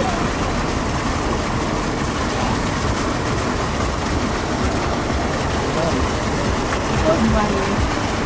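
Steady rushing splash of a fountain's water spout falling into its stone basin, mixed with general outdoor background noise and faint voices of people nearby.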